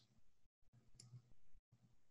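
Near silence: room tone with a faint low hum and a short faint click about a second in.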